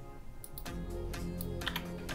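Soft background music with steady held tones, over which a few computer mouse clicks and keystrokes sound, in a small cluster about half a second in and again near the end.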